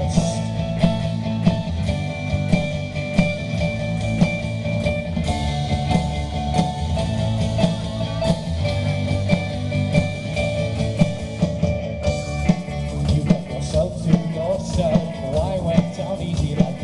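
Live rock band playing through a PA: electric guitars, bass and drums with a steady beat, and a high note held over it twice.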